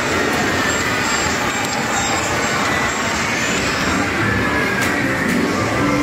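Steady arcade din: the electronic sound effects and music of many game machines overlapping into one dense wash, with no single sound standing out.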